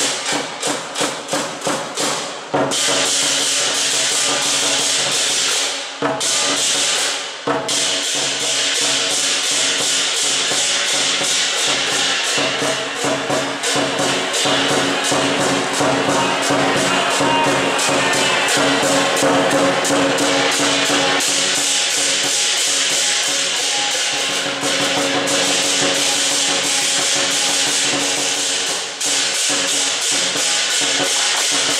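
Lion dance percussion: a drum beating in a fast, dense rhythm with cymbals clashing and a gong ringing under it.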